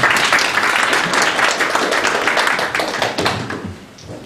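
Audience applauding, the clapping fading away near the end.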